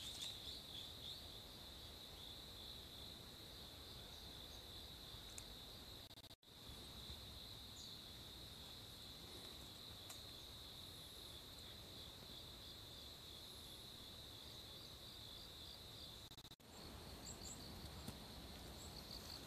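Faint, steady chorus of insects in the woods: a continuous high-pitched trill with a pulsing texture. It drops out for an instant twice, with a few short higher chirps near the end.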